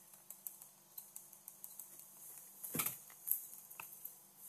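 Faint, scattered light clicks and taps from working a computer drawing setup: a stylus on a Wacom tablet and keyboard keys. A slightly louder soft sound comes a little before three seconds in.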